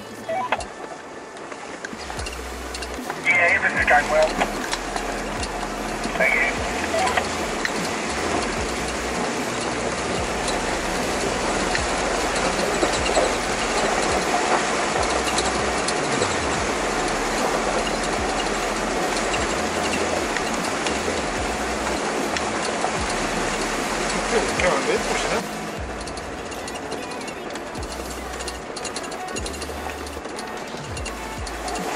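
River water rushing and splashing against a four-wheel-drive vehicle as it wades across a braided-river channel. It is a steady rush with a few louder splashes or knocks, and it cuts off sharply about 25 seconds in.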